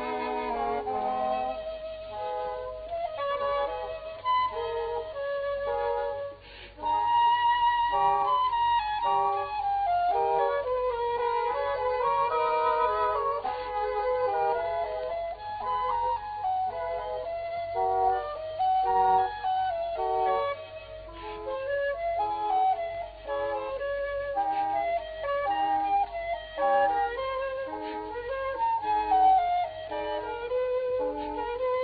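A Baroque chamber ensemble is playing. A transverse flute leads with a running, ornamented melody over double-reed woodwinds, with a brief break about six seconds in.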